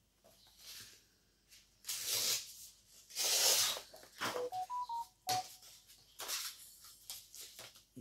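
A colouring-book page being torn against the edge of a ruler, in several ragged rips, the longest and loudest about three seconds in. Midway, a quick run of five short electronic beeps at different pitches.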